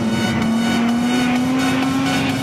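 Snowmobile engine running at a steady speed while riding, its pitch rising slowly, with electronic music playing over it.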